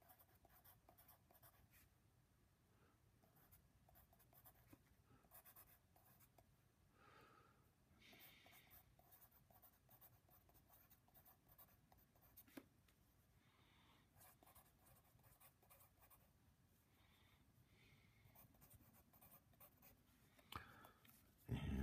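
Faint scratching of a wooden pencil writing words by hand on a paper worksheet, in many short strokes, with one sharper tick about halfway through.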